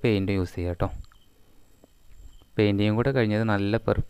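A man speaking in Malayalam, broken by a pause of about a second and a half in which only a faint, high, steady tone is heard.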